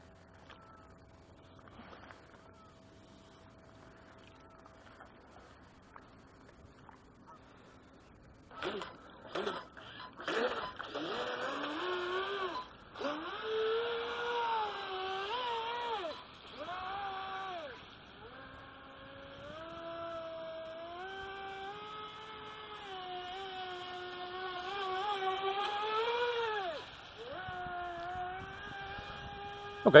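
Feilun FT011 brushless RC speedboat running under power: an electric-motor whine that comes in about eight seconds in after a near-silent start, then rises and falls in pitch in long sweeps, with a hiss above it.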